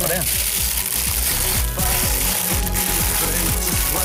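Parchment paper crinkling and rustling as hands gather it up and twist it closed into a parcel, with a few sharper crackles. Under it runs background music with a low beat.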